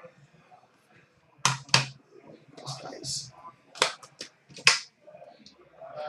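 Hard plastic card cases handled on a glass counter: several sharp clicks and knocks, with a brief rustle about halfway through.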